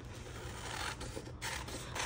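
Scissors cutting paper, quiet and irregular, as the edge of a printed letter-size sheet is trimmed, with the paper rustling as it is handled.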